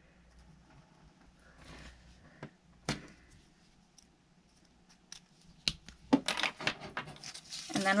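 Black marker scratching faintly on construction paper, a few sharp clicks of the marker and its cap, then construction paper rustling as the sheet is picked up and handled near the end.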